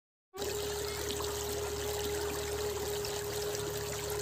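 Water of a shallow stream running over stones, a steady trickling rush, with a single steady tone held over it. Both begin a moment in.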